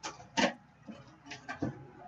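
Cardboard handling: a cardboard shipping case and the hobby boxes inside it knock and tap against each other as they are moved. Five or six short knocks, the loudest about half a second in.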